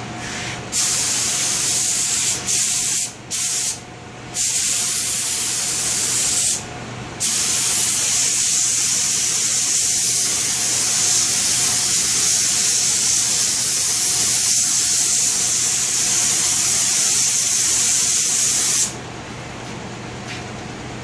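Compressed-air spray gun with a siphon cup spraying finish: a loud hiss in a few short bursts with brief gaps, then one long unbroken hiss of about twelve seconds that cuts off sharply near the end. A faint steady hum runs underneath.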